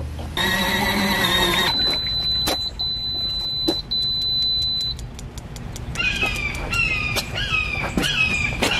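Portable collapsible washing machine beeping three times, each beep a steady high tone about a second long, which signals that its wash cycle has finished. Before the beeps there is a brief steady hum.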